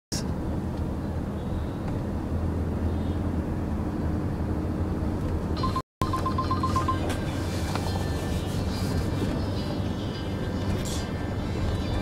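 Steady low drone of a car on the move, heard from inside the cabin. About six seconds in, the sound cuts out for a moment, and a mobile phone gives a quick run of about eight short, high beeps.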